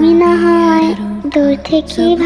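A young woman's high voice drawing out the Bengali words "āmi nā" in long, steady sing-song notes over soft background music.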